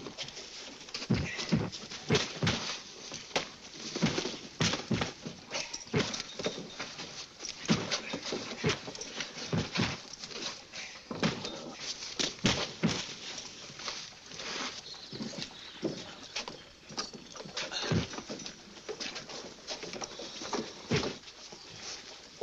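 A run of irregular thuds and knocks as heavy sacks are thrown onto a wooden wagon bed.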